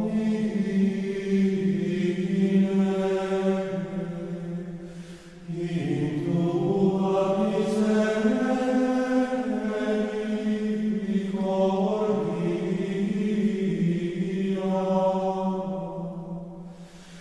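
Sung religious chant: voices holding long notes that step slowly from one pitch to the next, with a short break about five and a half seconds in.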